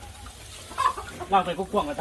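Chickens clucking in a coop of gamecocks.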